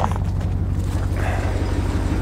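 Jeep Wrangler engine running at low speed with a steady low rumble as it pulls forward towing a small camper trailer. Tyre noise on the dirt track joins about a second in.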